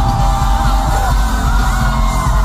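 Live pop concert music heard from within the audience: a singer over a loud band with a heavy, booming bass, and the crowd yelling and whooping along.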